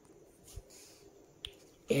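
Two brief soft clicks about a second apart, with faint room tone, as a paperback textbook and its pages are handled.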